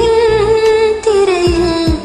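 A woman singing long held notes over a karaoke backing track with a low drum beat. The first note is held steady, and about halfway through a slightly lower note follows, sliding down.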